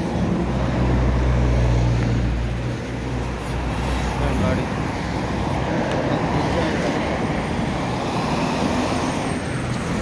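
Cars passing close by on a city road. A deep engine rumble from a passing vehicle is loudest for the first four seconds or so, then gives way to a steady wash of tyre and traffic noise.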